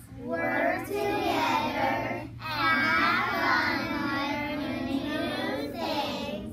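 A group of young children chanting together in a sing-song chorus, in two phrases with a short break about two seconds in.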